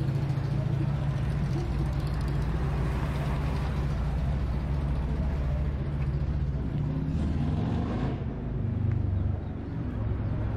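Street traffic with a vehicle engine running steadily close by, a low even hum. Near the end the hum briefly drops and then swells again.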